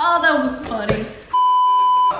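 A steady, high-pitched test-tone beep of the kind played over TV colour bars. It cuts in abruptly about one and a half seconds in and holds level for under a second.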